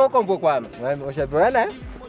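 Men talking, with a steady high-pitched insect drone, crickets, underneath.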